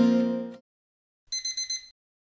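Acoustic guitar music fading out, then a short run of high electronic alarm-clock beeps, about four quick pulses, a little past halfway.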